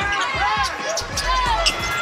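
Basketball game sound on a hardwood court: the ball bouncing, with many short high-pitched squeaks and crowd noise in the arena.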